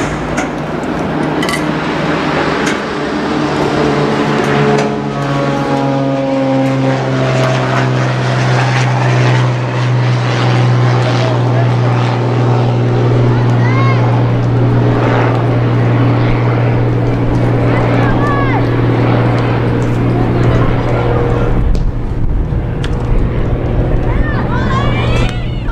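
A steady, droning engine hum, the loudest sound here, that slides down in pitch about five to seven seconds in and then holds one pitch, under faint voices.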